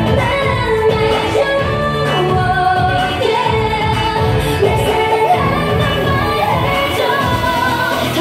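K-pop dance song with female singing over a steady beat.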